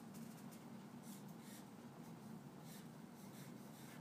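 Faint scratching of a pencil writing on paper, in irregular short strokes.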